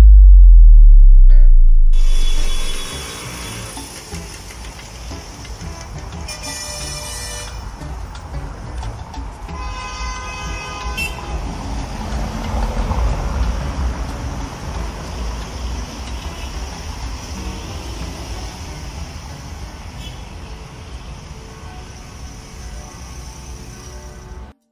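A deep bass boom opens, fading away by about three seconds, followed by steady city traffic noise with vehicle horns sounding twice, around six seconds in and again around ten seconds in.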